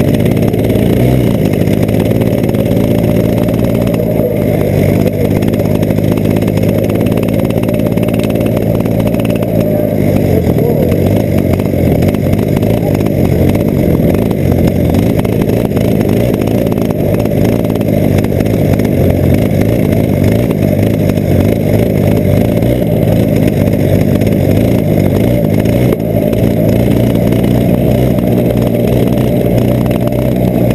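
Racing kart's small engine running continuously, heard close up from the kart itself, its pitch shifting around ten seconds in and again near the end as the throttle changes.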